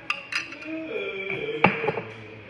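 A few sharp clinks of a metal spoon against a glass pitcher and the serving dish while saffron butter is spooned out. The clinks come in two pairs, the louder pair near the end, over quiet sustained music notes.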